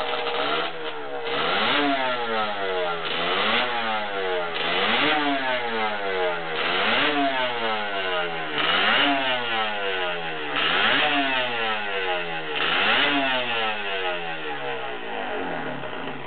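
Yamaha two-stroke road-racing motorcycle being revved in repeated throttle blips, about one every two seconds. Each time the engine note climbs sharply, then falls back more slowly toward idle.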